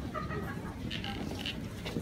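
Indistinct voices of shoppers in a crowded bookshop, with a brief higher-pitched voice near the start.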